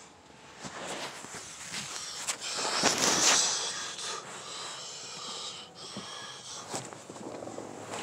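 Handling noise from a phone as it is taken off the dashboard: rubbing and scraping against the phone's microphone, with scattered clicks, loudest about three seconds in.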